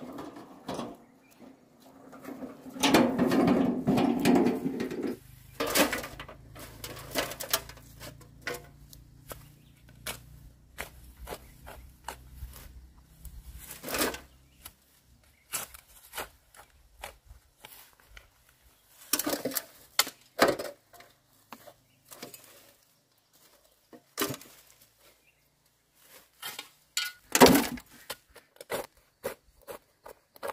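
Metal wheelbarrow rattling for a few seconds as it is wheeled over the ground, then a hoe chopping into earth in irregular strokes, with clods of soil scraped and dropped into the wheelbarrow's steel tray.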